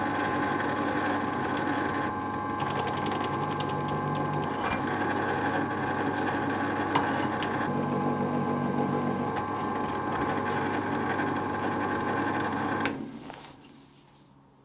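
Bench drill press motor running steadily while a spot drill bit cuts into a metal plate held in a jig, with a few light scraping clicks from the cut. Near the end the drill is switched off and the chuck spins down.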